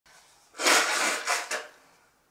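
A woman's sneeze: a sudden loud, breathy burst about half a second in, followed by two shorter puffs that die away before the end.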